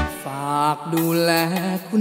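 A male singer sings a line of a Thai luk thung song over backing music, with the bass and beat dropping out under this line.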